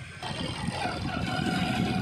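A vehicle's engine running, with road noise, heard from the moving vehicle. It starts abruptly just after a short quiet moment.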